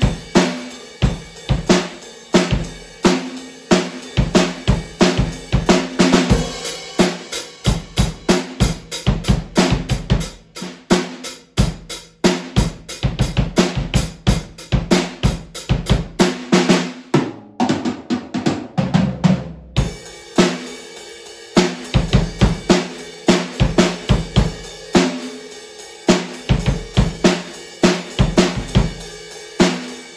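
Acoustic drum kit played solo in a steady groove of drum and cymbal hits. Just past halfway comes a couple of seconds of very rapid strokes, after which the groove picks up again.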